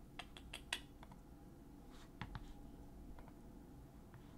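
Faint, irregular clicking at a computer: keystrokes and mouse clicks, a cluster in the first second and another a little after two seconds in.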